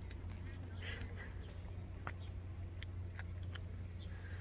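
Quiet outdoor ambience at a canyon rim: a steady low rumble with a few faint scattered ticks and faint distant voices.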